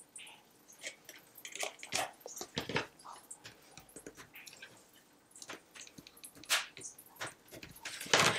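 Faint crackles and clicks of a heavy-duty acetate sheet being folded and pinched shut by hand, with a bone folder pressed along the taped seam; the clicks come in a busy cluster a couple of seconds in and once more, sharper, later on.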